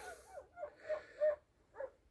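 A few faint, short breathy sounds from a person's breathing, four small puffs with a slight wavering pitch.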